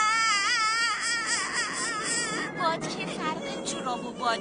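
A cartoon character's high-pitched crying voice: one long wavering wail lasting about two and a half seconds, breaking into shorter sobbing cries.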